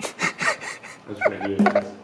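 A man gulping sparkling water straight from a plastic bottle, a quick run of short swallowing clicks, then a short voiced gasp for breath as he lowers the bottle.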